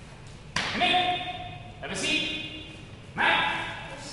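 A child's sharp kiai shouts, three of them about a second apart, each starting abruptly with a high, steady pitch and trailing off, as taekwondo strikes are thrown.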